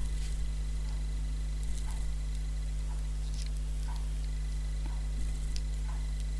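Faint soft clicks and rustles of knitting needles and yarn as stitches are worked, a few light ticks scattered through, over a steady low electrical hum.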